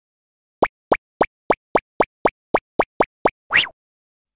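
Cartoon sound effects for an animated logo: a quick run of eleven short rising pops, nearly four a second, then a short upward-sliding whoosh near the end.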